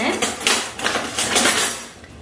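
Kitchen dishes and utensils clattering and scraping as they are handled, a close run of knocks and scrapes that fades near the end.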